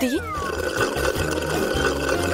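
Drink being sucked up through a long drinking straw: a steady, continuous gurgling slurp. A short falling whistle-like glide is heard at the very start.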